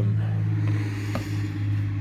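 A steady low machine hum, with a faint click about a second in as the boxed mini electric chainsaw is handled.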